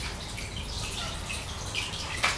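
Cartridge aquarium filter running, its outflow water splashing steadily into the tank.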